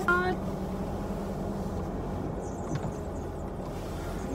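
Old car heard from inside the cabin while driving: a steady low rumble of engine and road noise with a constant hum. The driver puts the noise down to the car being old and rusty.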